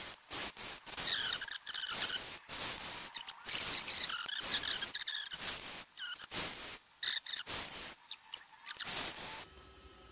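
Cordless drill driving an M3 tap into a small aluminium part in short stop-start bursts, with high-pitched squeals as the tap cuts the threads. The bursts stop about nine and a half seconds in.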